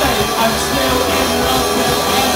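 A live rock band playing loud, amplified music without a break.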